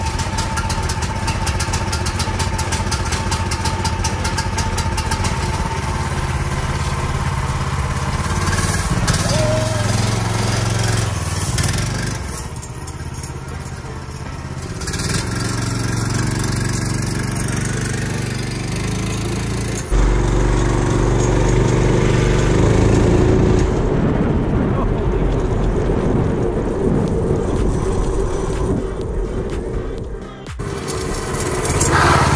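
Harbor Freight Predator 420cc single-cylinder engine on a homemade bar stool kart, running under throttle with its engine speed rising and falling as the kart is ridden. The sound drops a little quieter about twelve seconds in, then turns suddenly louder and closer about twenty seconds in.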